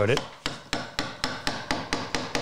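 Quick, light mallet taps on a Kerf X10 kerfing chisel, about four taps a second, driving its blade down into the saw kerf of a half-blind dovetail to finish the cut.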